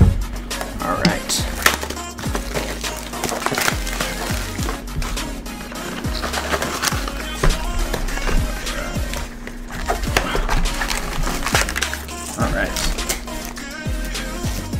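Plastic shrink wrap crinkling and tearing and cardboard being pulled open as a sealed trading-card blaster box is cut open and its packs pulled out, in irregular crackles, over background music.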